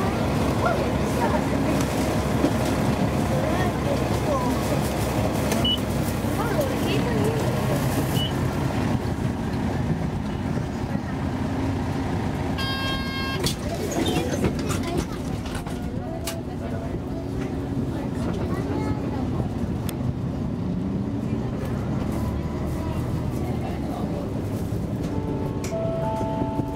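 Interior of a moving city bus: steady engine and road rumble under the murmur of passengers' voices, with a short buzzer-like tone about halfway through.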